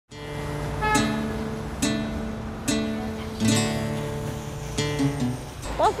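Background music on acoustic guitar: strummed chords ringing on, with a new strum about every second.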